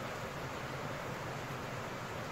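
Steady, even hiss of background noise with no distinct strokes or other events.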